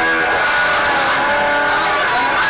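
Live band playing loud music with electric guitar, its notes held and ringing over each other.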